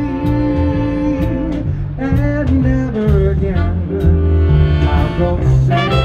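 Live swing band playing: a male vocalist singing over upright bass, drum kit with steady cymbal ticks, and trombone and trumpet. A long held sung note opens the passage, and the horns come in stronger near the end.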